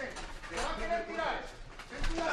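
Indistinct voices calling out from cageside during an MMA bout, with short bursts of raised, high-pitched speech.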